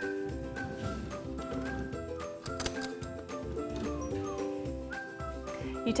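Instrumental background music: a melody of held notes stepping from one pitch to the next over a low bass line.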